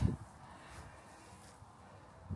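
Near quiet: faint outdoor background with no distinct sound, after a brief sound cut off at the very start.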